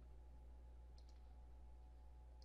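Near silence: a steady low hum, with two faint clicks close together about a second in.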